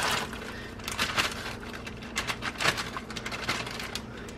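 Frozen sweet corn kernels being shaken out of a plastic bag into a pot of boiling water: irregular crackles and plops, with the plastic bag crinkling.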